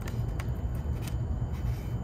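Wires being handled and a plastic XT30 connector being pushed together, a few faint clicks over a steady low hum.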